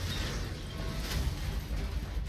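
Action-movie trailer soundtrack playing: a steady low rumble with faint music under it, and no sharp blast.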